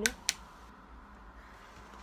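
Sichler mini travel steam iron: two sharp clicks about a quarter second apart as its steam control is switched on, then a faint steady hiss of steam escaping.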